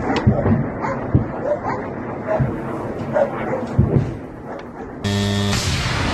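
Field recording under a rocket barrage: irregular dull thuds of distant blasts over a rumbling background, with a few short sharp calls. About five seconds in it cuts to a steady buzzing hum.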